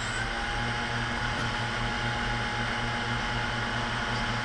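JJRC X1 quadcopter's four brushless motors idling just after arming, propellers turning on the ground: a steady electric hum and whine that holds one pitch.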